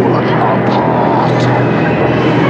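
Horror film dialogue: a man's voice speaking a line over a steady low rumble.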